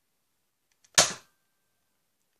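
Nerf Elite AccuStrike SharpFire spring-plunger blaster firing one dart: a single sharp snap about a second in, just after a faint click.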